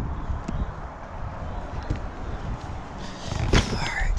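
Low wind rumble and handling noise while a cardboard box is carried by hand, with a short knock about three and a half seconds in as the box is set down on the asphalt.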